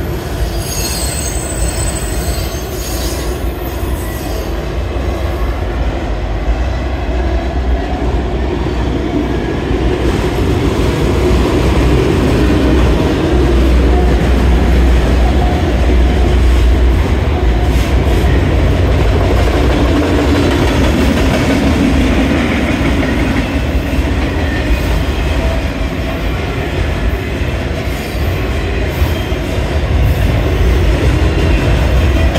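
CSX autorack freight train rolling past: a steady rumble and rattle of the tall auto-carrier cars over the rails, growing louder from about ten seconds in. A high wheel squeal is heard in the first few seconds.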